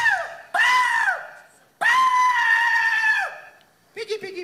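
A man hog-calling with his hands cupped around his mouth, in a loud, high falsetto. The end of one call comes first, then a short call, then one call held for about a second and a half. Each call rises quickly and drops in pitch as it breaks off.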